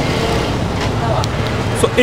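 Steady motor-vehicle rumble and road noise, with faint voices in the background.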